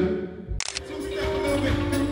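Live band music: a held chord dies away, a sharp hit comes about half a second in, then the band carries on with sustained keyboard chords over a light rhythm.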